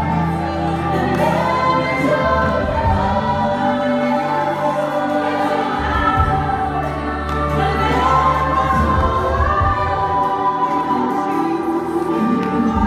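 Live gospel worship music: female lead singers and a full choir singing together over a band with keyboard and electric guitar, with held low notes underneath.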